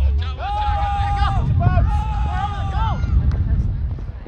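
High-pitched voices shouting at a youth soccer game, with long drawn-out calls held for about a second at a time, over a steady low rumble.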